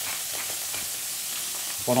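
Scallops searing in hot butter in a frying pan: a steady crackling sizzle.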